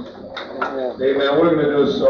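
A person's voice, indistinct words on an old cassette recording of a live show, with a steady high-pitched tone behind it.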